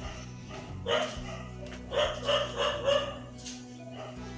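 A dog yipping in short high yelps, once about a second in and then a quick run of four or five, over steady background music.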